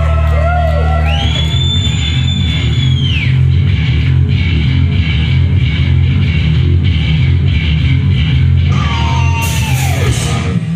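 Thrash metal band playing live: heavily distorted electric guitars, bass and drums at full volume, with a high held note about a second in that lasts around two seconds and sliding notes falling in pitch near the end.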